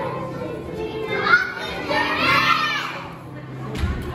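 A group of young children's voices calling out together, loudest from about a second to three seconds in.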